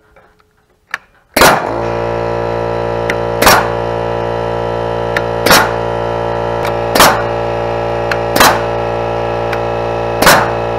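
Grip Rite SB150 single-blow pneumatic joist nailer firing nails through a metal joist hanger into a wooden beam: about five sharp shots, one every one and a half to two seconds. From about a second and a half in, a steady drone of fixed pitches runs underneath the shots.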